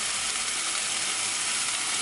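Steady sizzle of food frying in hot pans on the stovetop.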